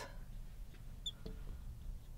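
Marker writing on a glass lightboard: faint small taps and scratches, with one brief high squeak about a second in.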